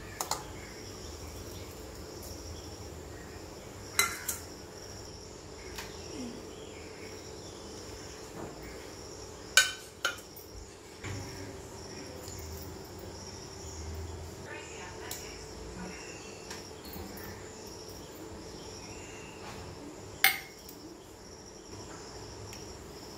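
A spoon clinking against a stainless steel bowl a handful of times as spice powders are added, the loudest clink about ten seconds in. Behind it runs a steady high chirping of insects and a low steady hum.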